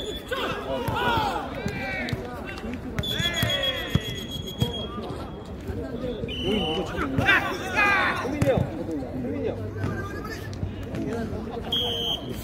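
Jokgu players shouting calls and encouragement to each other during a rally, with a few sharp thuds of the ball being kicked. Short high steady tones sound several times.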